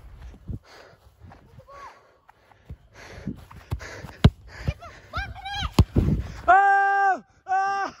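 Kids shouting and calling out while running, ending in two long, held, high-pitched calls. Wind rumbles on the phone's microphone as it is carried at a run, and there are a couple of sharp knocks midway.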